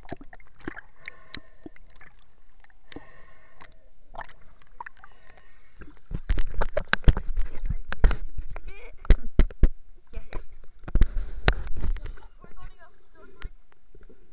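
Water sloshing and splashing around a waterproof camera as it is handled at and under the lake's surface, with loud close knocks and thuds against the camera from about six seconds in until about twelve seconds in.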